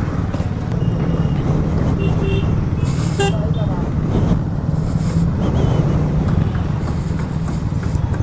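Single-cylinder KTM Duke motorcycle engine running steadily at low speed in slow city traffic, with several short horn beeps between about one and three and a half seconds in.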